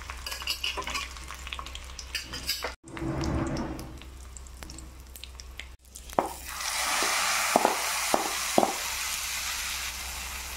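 Dried red chillies and curry leaves sizzling and crackling in hot oil in a small aluminium kadai. In the second half the tempering hits the hot pumpkin curry and sizzles loudly and steadily, with a few sharp metal knocks.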